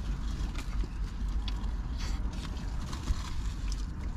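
A steady low rumble inside a car, with faint rustles of foil sandwich wrappers and chewing as two people eat.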